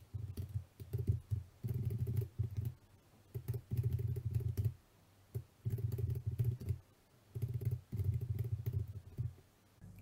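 Typing on a computer keyboard in quick bursts of about a second each, with short pauses between.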